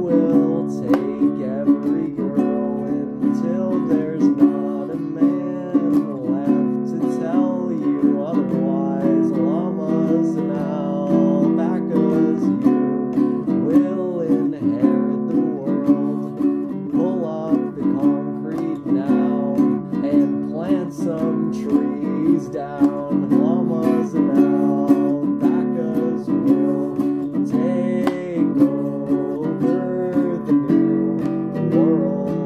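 Acoustic guitar strummed steadily in a folk-punk song.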